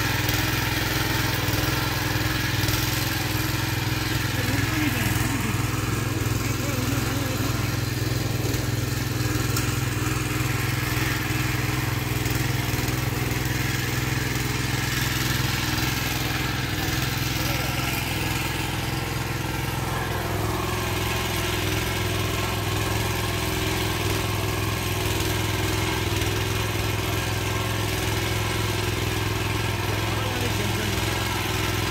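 Small engine of a walk-behind mini tiller running steadily under load as it churns soil, its note dropping slightly about twenty seconds in.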